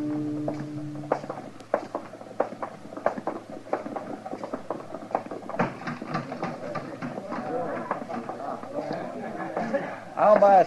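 Radio-drama scene change: a music bridge ends about a second in, then a run of irregular sharp knocks from sound-effect steps. From about halfway, the background murmur of a saloon crowd comes in.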